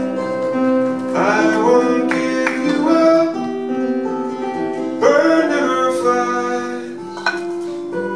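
A man singing a slow melody to his own acoustic guitar, with fresh strums about a second in, at two and a half seconds and at five seconds.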